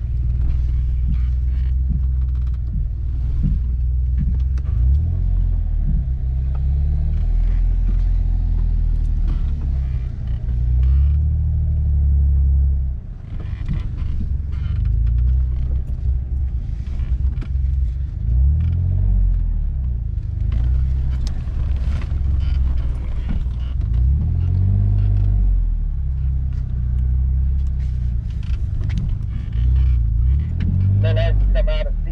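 Jeep Wrangler JK's engine running at low speed as it crawls along a rough trail, heard from inside the cab. The revs rise and fall every few seconds, and knocks and rattles from the body sound over the bumps.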